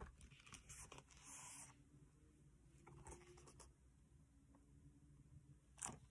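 Near silence with faint handling of a picture book: a short soft paper rustle about a second in and a few light clicks.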